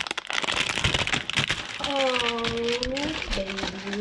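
Clear plastic shrink wrap crinkling as it is peeled off a trading-card hanger box. About halfway through, a drawn-out vocal sound dips and rises in pitch, followed by a short steady hum near the end.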